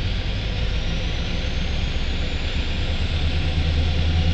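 Low, steady diesel rumble from a CSX EMD GP38-2 road-switcher moving slowly, heard from inside a car, growing slightly louder toward the end. A faint high whine rises slowly in pitch.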